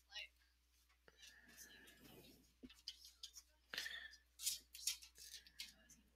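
Faint, distant voices of students talking quietly in a classroom, with scattered soft hissing sounds.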